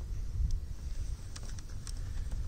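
Low rumble of wind and handling noise on the phone's microphone, with a few faint ticks as a plastic card is pushed into the vinyl at the corner of a car's grille bar.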